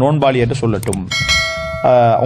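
A bell-chime sound effect from an animated subscribe-button overlay, a single ring of several steady tones lasting under a second that begins about halfway through and stops abruptly, over a man speaking.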